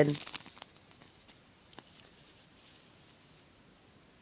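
Faint crinkling of a small plastic bag of glitter being shaken and turned in the hand during the first second, with one small tick just before the two-second mark, then quiet room tone.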